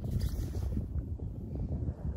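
Wind buffeting the microphone: an unsteady low rumble that rises and falls in gusts.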